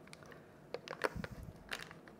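Soft, scattered crinkling and crackling of the foil wrapper on a block of cream cheese being peeled open by gloved hands, with a soft low thump a little past the middle.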